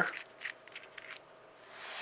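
Light metallic clicks from an RCBS Precision Mic headspace gauge being handled and its thimble screwed down on a .223 Remington cartridge to measure headspace, a quick run of about half a dozen faint ticks in the first second.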